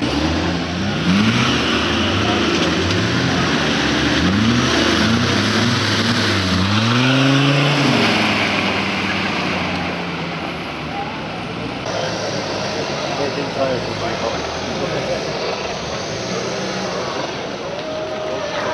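Off-road trials vehicle's engine revving in repeated bursts, its pitch climbing and falling about once a second for the first several seconds, then running more steadily under load as it works up a steep mud mound.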